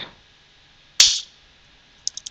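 A single sharp keystroke on a computer keyboard about a second in, dying away quickly, with faint room tone around it.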